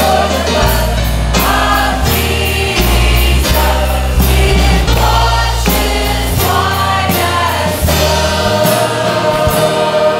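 Church choir singing a hymn over instrumental accompaniment, with held low bass notes that change every second or two.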